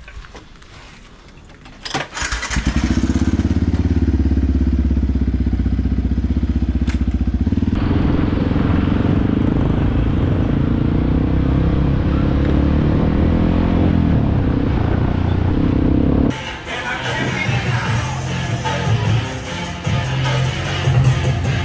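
Motorbike engine starting about two seconds in, then running steadily and revving as it pulls away, with its pitch rising and falling under throttle. About four seconds before the end the sound cuts abruptly to music.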